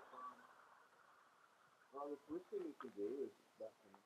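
Faint calls from a pet bird in the background: a run of short pitched calls that bend up and down, starting about halfway through, over a low room hiss.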